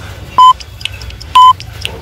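Workout interval timer beeping a countdown: two short, loud, high beeps about a second apart.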